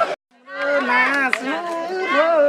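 Panche baja band music cuts off abruptly, and after a short silence a man's voice speaks in drawn-out, wavering tones.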